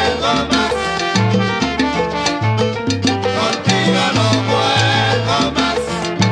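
Salsa music without singing: a bass line moving in short held notes under dense instrumental parts, over a steady percussion beat.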